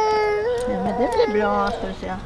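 A small child crying: one long, high wail that sags slightly in pitch and fades about halfway through, followed by a lower adult voice.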